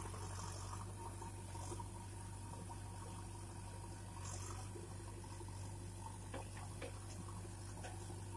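JCB backhoe loader's diesel engine running steadily at a distance while the machine works its boom and front bucket to cross a trench, with a few faint knocks late on.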